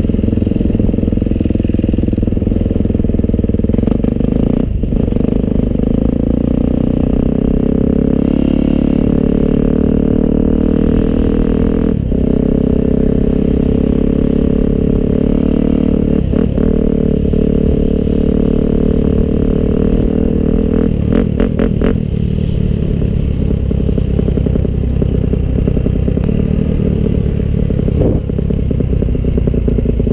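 Motocross bike engine running at an easy, fairly steady pace, with small rises and dips in revs, recorded close from on the bike. A few sharp rattling clicks come about two-thirds of the way through.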